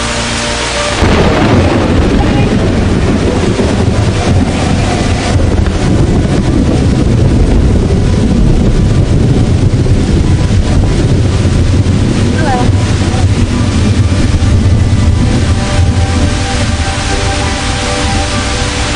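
Muddy floodwater rushing down a city street in a rainstorm: a loud, steady, low rush of water. It cuts in suddenly about a second in, over the tail of background music.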